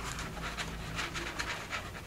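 Soft rustling and small taps of paper and card being handled as a page and tuck are slid against each other, over a faint low room hum.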